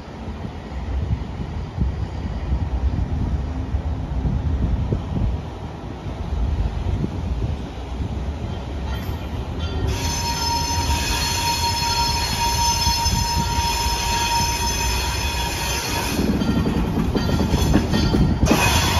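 Alco RS27 diesel locomotive approaching slowly: a low engine rumble at first, then from about ten seconds in a high-pitched steel wheel squeal made of several steady tones. The engine grows louder near the end as the locomotive draws close.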